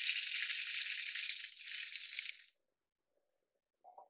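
Whole coffee beans poured into the plastic bean container of a De'Longhi KG79 burr grinder, rattling as they fall in. The pouring thins out and stops about two and a half seconds in, followed near the end by a faint tap.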